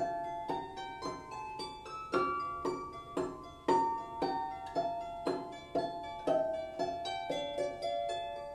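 Solo Celtic harp: a slow melody of single plucked notes, about two a second, each left ringing over the next.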